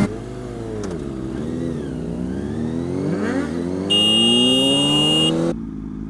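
Kawasaki ZX-6R 636 inline-four engine heard from the rider's seat, its pitch dipping and wavering and then climbing steadily as the bike accelerates, until it cuts off near the end. A loud, shrill high-pitched tone comes in over it for about a second and a half, past the middle.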